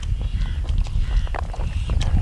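Eating by hand off banana leaves: scattered small clicks and rustles of fingers on the leaf and rice, and of chewing, over a steady low rumble.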